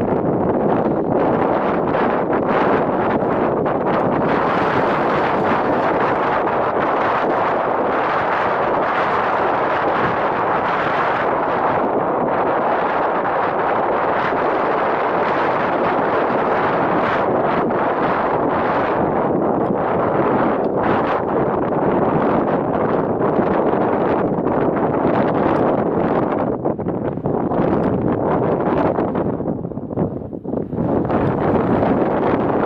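Strong mountain wind buffeting the microphone: a steady, dense rushing noise with no pauses, easing slightly near the end.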